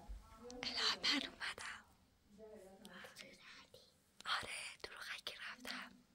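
A person whispering in two short stretches, with quieter spoken words between them.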